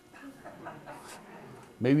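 A quiet room with faint, indistinct voices, then a man starts speaking near the end.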